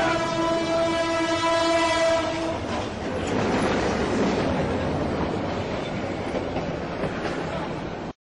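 Diesel locomotive horn held on one steady note, cutting off about two and a half seconds in. The rough, noisy running of the train coming up to the crossing follows.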